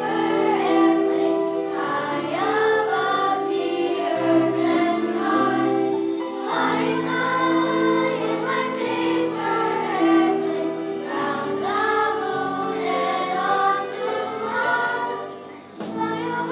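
Children's choir singing with musical accompaniment, the loudness dipping briefly near the end.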